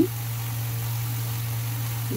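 A steady low hum, with ground masala frying faintly in oil in a steel kadai.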